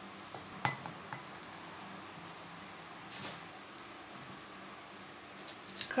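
A few light clinks and knocks as a small terracotta pot is handled on the table, with a short scrape of potting mix about three seconds in, over a faint steady hum.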